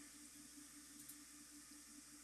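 Near silence: faint steady hiss and low hum of room tone.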